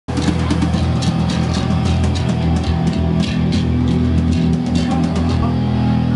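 Live hardcore punk band playing loudly: distorted guitar and bass chords over fast drum and cymbal hits. The drumming stops about five seconds in, leaving a held chord ringing.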